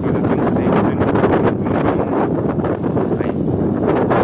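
Wind buffeting the microphone: a loud, steady low rumble of wind noise.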